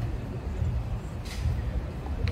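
Low, uneven outdoor rumble, with a short hiss a little over a second in.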